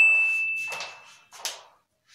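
Subscribe-button animation sound effect: a single bright ding that rings out and fades over about a second, with three short click-like swishes, the last of them about one and a half seconds in.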